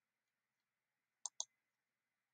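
Two quick clicks of a computer mouse, close together a little over a second in, against near silence.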